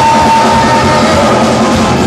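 Live rock band playing loudly with electric guitar and drum kit, a long held note ringing over the band until a little past halfway.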